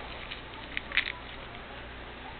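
A few light clicks and taps of small objects being handled and set down on a tabletop, the sharpest a quick double click about a second in, over a steady background hiss.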